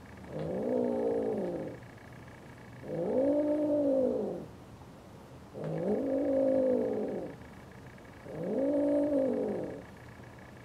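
Seal-point Siamese-type cats mating, one yowling repeatedly. There are four long, drawn-out calls, each rising then falling in pitch, with short pauses between.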